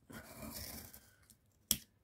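Craft knife blade dragging through corrugated cardboard along a steel ruler: a rasping scrape for about a second that fades out, then one sharp click near the end.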